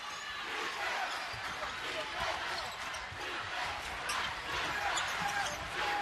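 Steady arena crowd noise with a basketball being dribbled on a hardwood court, the bounces faint under the crowd.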